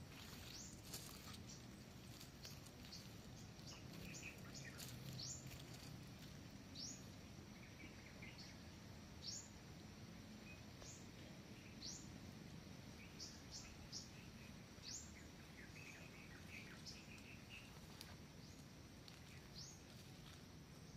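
Faint forest ambience with a bird repeating short, high, rising whistled notes about once every second or two, mixed with some softer, lower chirps.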